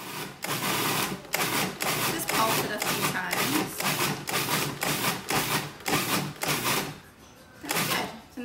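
Cuisinart food processor pulsed in short bursts, about two a second, its blade chopping onion, scallions, tomato, habanero and cilantro into a minced relish.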